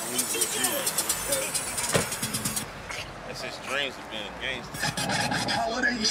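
Indistinct talking, with a single sharp knock about two seconds in.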